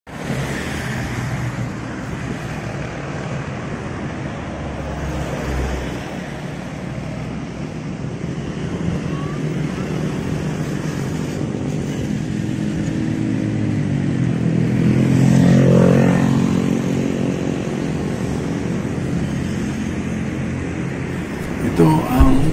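Roadside traffic noise, with a motor vehicle passing close by about fifteen seconds in: its engine grows loudest, then drops in pitch and fades away.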